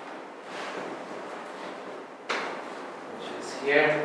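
A single sudden thump a little over two seconds in, fading out over about a second, against the background noise of a room; a man's voice starts near the end.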